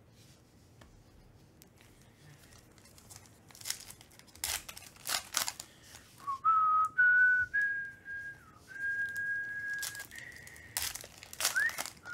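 Foil trading-card pack wrappers crinkling and tearing open, in a burst about four seconds in and another near the end. Between them a person whistles a few long, held notes, each a little higher than the last.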